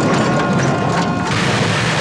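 Action-film crash sound effects: a dense, steady din of rumbling and clattering debris as a roadside stall is smashed apart.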